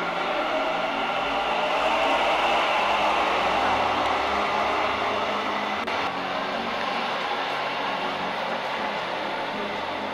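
Namma Metro train pulling out of an underground station: a rising whine as it accelerates over the rumble of its wheels. It is loudest a couple of seconds in, then fades as the train goes into the tunnel.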